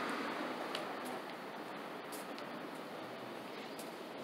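Faint, steady outdoor background noise with a few soft, irregular clicks while a person walks across pavement.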